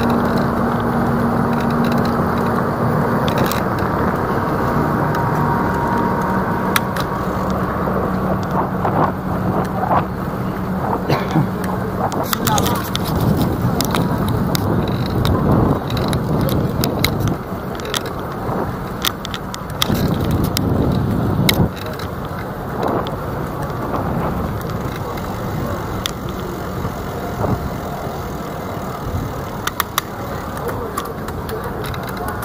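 Busy city street ambience: steady traffic noise, with a low vehicle engine hum for roughly the first ten seconds, passers-by talking, and scattered short clicks and knocks.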